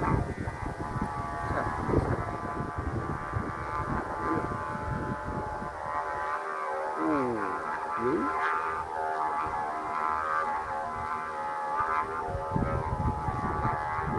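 Kite flutes droning on several steady pitches at once, the pitches dipping and rising briefly as the wind shifts. Strong gusting wind rumbles on the microphone underneath and eases off for a moment mid-way.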